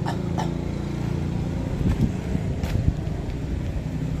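Diesel engine of an asphalt paver running steadily, with a couple of short metallic knocks about two and three seconds in.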